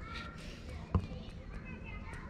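Faint voices talking in the background, with a single sharp knock about a second in.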